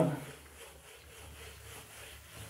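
Whiteboard duster rubbing back and forth across the board, a faint repeated swishing as marker writing is wiped off.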